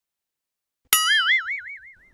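A comic 'boing' sound effect starts suddenly about a second in: a twangy tone whose pitch wobbles up and down about five times a second as it fades.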